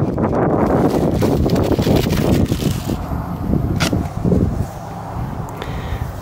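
Wind buffeting the microphone in a heavy, gusting rumble, mixed with bubble-wrap plastic crinkling as it is pulled off coilover struts. A single sharp crackle stands out about four seconds in, and the wind eases slightly near the end.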